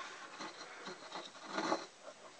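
Faint rubbing and handling noise from a hand moving the wooden clothespin stand that holds a model locomotive shell. It is soft throughout, with a slightly louder rub a little past the middle.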